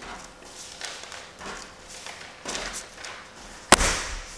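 Magnetic embroidery hoop's top frame snapping shut onto its bottom frame through a sweatshirt: one sharp clack near the end, after faint rustling as the frame is lined up over the fabric.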